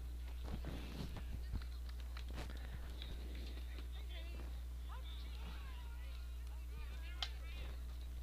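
Steady low electrical hum on the broadcast audio line, with no crowd sound, under faint indistinct background sounds and a single small click near the end.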